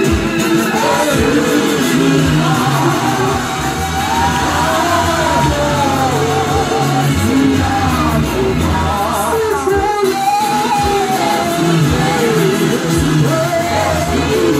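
Live gospel worship song sung in isiZulu, a male lead singer with backing vocalists through microphones and loudspeakers, over a steady instrumental backing with held bass notes.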